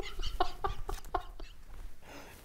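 A man laughing in a string of short, quick bursts that fade away over about a second and a half.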